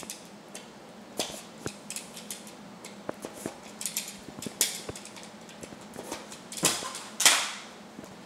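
Small white cardboard box being handled and opened by hand: scattered light clicks and taps, then two louder rustling scrapes near the end, the second the loudest.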